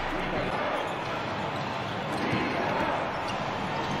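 Steady arena noise during a basketball game, with murmur from a small crowd and sounds from the court.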